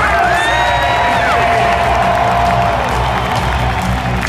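Music over the arena sound system with a large crowd cheering and whooping, loud and steady throughout.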